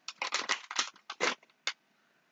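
Foil blind-bag packet being handled and torn open, a quick irregular run of short crackly rustles that stops just before two seconds.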